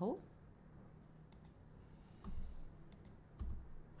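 Faint, scattered clicks of a computer mouse and keyboard, about half a dozen spread over the last three seconds, with a couple of soft low thumps.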